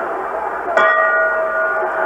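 Boxing ring bell struck once about a second in, ringing on with several clear tones over steady background noise, from an archival fight recording.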